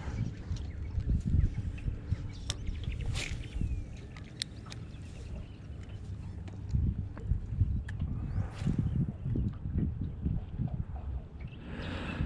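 Low, uneven rumble of wind and small waves lapping against a small fishing boat, with scattered light clicks and taps.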